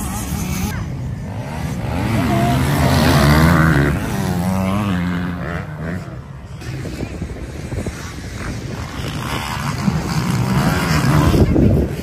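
Motocross bike engines revving on the track, their pitch climbing and dropping with throttle and gear changes. The revving is loudest a few seconds in and again near the end.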